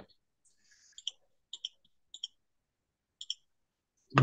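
A few faint, sharp clicks, mostly in quick pairs, spaced out over a few seconds, with a soft rustle before the first.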